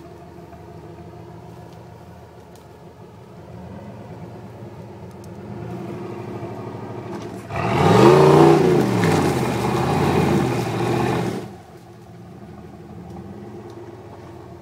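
Modified Jeep Wrangler's engine running low, then revved hard for about four seconds, its pitch rising and falling, with loud wheelspin noise as it struggles up a steep dirt climb. It then drops back to a low idle.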